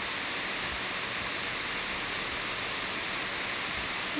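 Steady hiss of a microphone's background noise between sentences of a voice-over, with a few faint high ticks in the first second.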